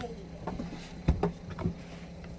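A phone being handled knocks twice, about a second in and again half a second later, over a steady low hum.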